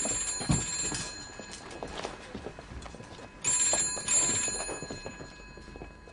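Telephone bell ringing in two bursts, each about a second long and about three and a half seconds apart, with a few soft knocks in between.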